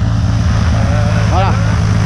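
Piston engine of a high-wing single-engine light plane idling on the ground, its propeller turning: a steady, loud drone with a low hum and a rushing hiss.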